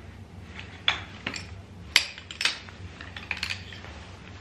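Poles of a Summit ultra light pack-away camp chair being pulled from the frame's hub sockets and knocking together: a run of sharp clinks and clicks, the loudest about two seconds in.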